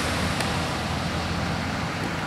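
Ocean surf washing onto a pebble beach: a steady rushing hiss over a low rumble.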